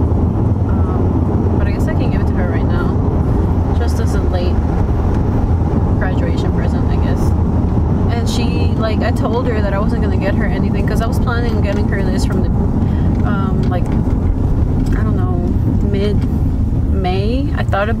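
Steady low road and engine drone inside a moving car's cabin, with a woman talking over it.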